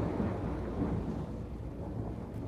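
A low, rumbling, thunder-like noise with a rain-like hiss, slowly fading.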